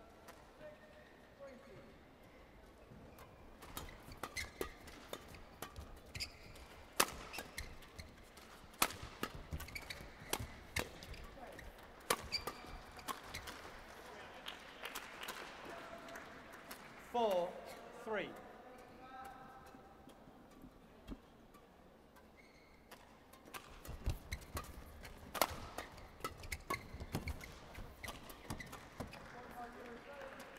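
Badminton rackets striking a shuttlecock in a doubles rally: sharp, crisp hits at irregular intervals in two spells of play, with players' footwork on the court between them.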